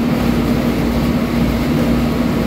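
Steady low mechanical hum with one constant low tone, unchanging throughout.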